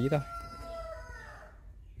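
A rooster crowing, its long drawn-out final note sagging slightly in pitch and fading out about a second and a half in.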